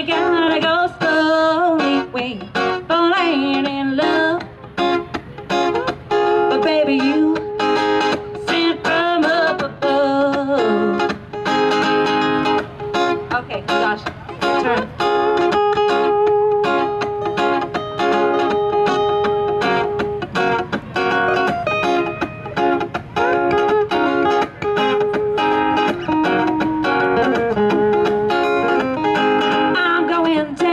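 Live country song on guitar: a woman's voice sings over the guitar for roughly the first ten seconds, then the guitar plays on alone in an instrumental passage.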